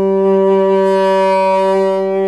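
Saxophone holding one long, steady low note.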